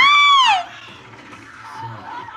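A short, high-pitched scream of alarm that rises and falls in pitch and lasts about half a second, followed by quieter background sound.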